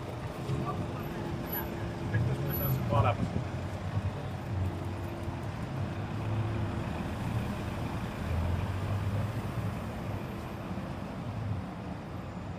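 City street ambience: a steady hum of road traffic, with voices of passers-by in the first few seconds.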